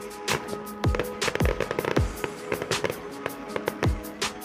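Music with deep electronic kick drums that drop in pitch and held tones, mixed with sharp bangs and crackles from an aerial fireworks display.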